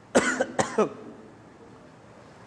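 A man coughs or clears his throat twice in quick succession, two short voiced coughs.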